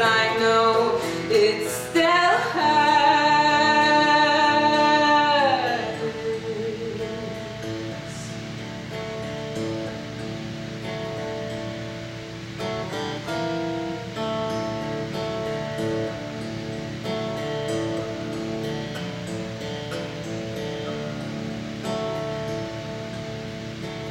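Woman singing to her own acoustic guitar. She holds one long note that falls away and ends about five seconds in, then the guitar plays on alone, quieter.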